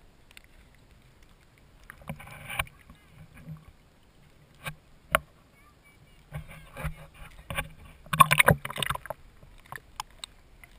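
Water splashing and sloshing against a GoPro held at the waterline beside a kayak, with scattered sharp knocks. There is a burst of splashing about two seconds in and a heavier cluster of splashes and knocks around eight to nine seconds.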